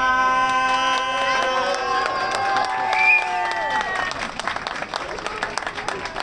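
Small accordion holding a final sustained chord that dies away about four seconds in, then scattered clapping and applause from the crowd.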